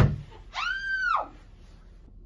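A sharp bang, then about half a second later a woman's short, high scream that rises and falls in pitch.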